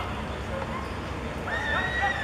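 Footballers shouting in a goalmouth scramble. Several high, drawn-out yells overlap from about one and a half seconds in, over a steady background of outdoor noise and distant voices.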